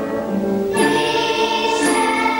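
Children's choir singing held notes, moving to a new chord a little under a second in.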